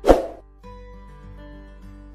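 A short, loud pop-like transition sound effect right at the start, accompanying a channel-logo card, dying away within half a second. After it, soft background music with held notes.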